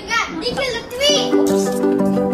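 High-pitched excited voices in the first second, then music of short repeated notes starts about a second in and carries on.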